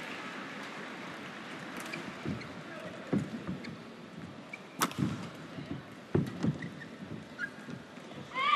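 Badminton rally: several sharp racket strikes on the shuttlecock about three to six seconds in, over the steady hum of an arena crowd.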